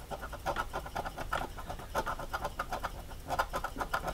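A red scratcher coin scraping the coating off a $30 Ultimate Millions scratch-off lottery ticket's prize spot in quick, rhythmic back-and-forth strokes, several a second.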